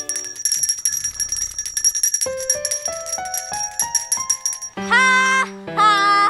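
A small handbell shaken rapidly and ringing without a break for nearly five seconds, with a run of notes climbing step by step under it from about two seconds in. Near the end, the bell stops and a louder pitched, voice-like sound comes in twice.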